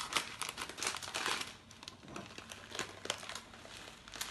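A clear plastic bag of coriander seeds crinkling as it is handled and opened. It makes a run of short crackles, thickest in the first second and a half and sparser after.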